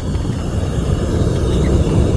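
Propane burner of a small backyard melting furnace running with a steady low rush of flame as it keeps a crucible of lava rock molten. It grows a little louder about a second in.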